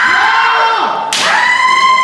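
Kendo fencers' kiai: two long, high-pitched shouts, the second starting just after a second in.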